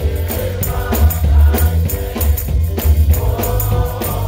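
Gospel choir singing with band accompaniment and strong bass, with hand claps and percussion keeping a steady beat.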